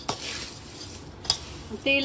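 Metal spoon stirring and tossing dry, crisp poha chivda in a steel pan, a steady rustling scrape with two sharp clicks of the spoon against the pan, one at the start and one about a second in.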